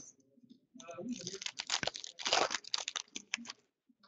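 Trading card pack wrapper crinkling and cards being rustled and flicked through by hand, a run of dense crackling and clicks from about a second in until shortly before the end.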